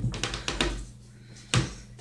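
Wooden cabinet doors and drawers being handled: a few light knocks and clicks in the first second, then a single thump about one and a half seconds in.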